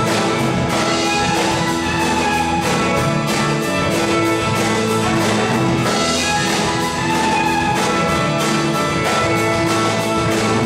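A folk rock band playing live: acoustic guitar, fiddle, electric bass and a drum kit keeping a steady beat.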